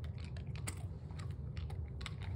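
A dog chewing a hard treat: a run of irregular, sharp crunching clicks.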